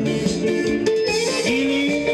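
A male mulatós singer's amplified voice singing into a handheld microphone over live backing music, holding one long note near the end.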